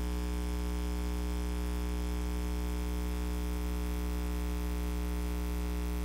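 Steady electrical mains hum: a low, unchanging hum with a stack of higher overtones, and no other sound.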